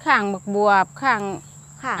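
A steady, unbroken high-pitched insect drone from the field, with a woman talking over it.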